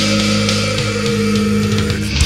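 Thrash/death metal recording: distorted electric guitars holding a sustained chord, with a few drum hits.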